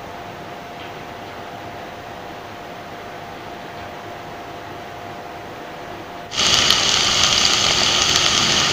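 A steady low hum with a faint steady tone. About six seconds in, a much louder hissing, crackling sizzle cuts in abruptly: the potato fry frying in hot oil in the pan.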